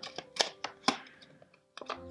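A tarot deck being shuffled by hand: a few sharp card clicks in the first second, then quieter handling.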